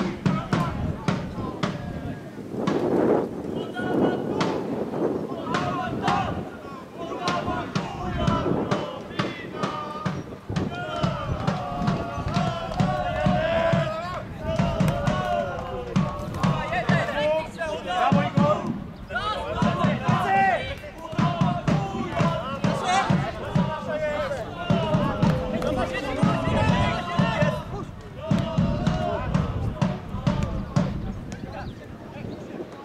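Indistinct shouting voices of players and onlookers on a football pitch, overlapping and continuous, with scattered thuds of the ball being kicked.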